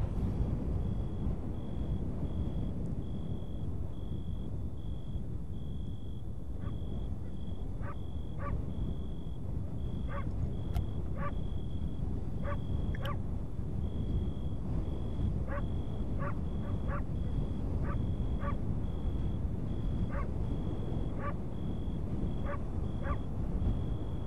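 Night ambience of frogs croaking in short single calls, irregularly about once a second, starting about six seconds in. Under them run a steady, evenly pulsing high insect chirp and a low rumble.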